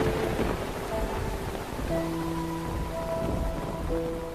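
Steady rain with a low rumble of thunder near the start, under a soft music score whose sustained notes come in about halfway through.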